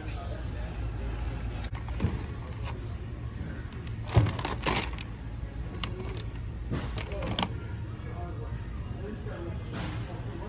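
Plastic wax-melt clamshell packs clicking and rattling as they are picked up and handled off a shelf, a few short clacks with the loudest cluster in the middle, over a steady low store background hum and faint voices.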